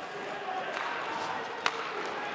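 Ice hockey arena sound: a steady crowd murmur with one sharp knock from play on the ice about three-quarters of the way in.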